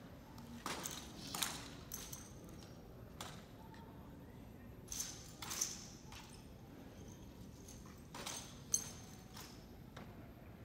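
Drill rifles being handled in an armed color guard's manual of arms: a series of sharp slaps and clacks of hands striking the rifles, several in pairs about half a second apart, the loudest near the end.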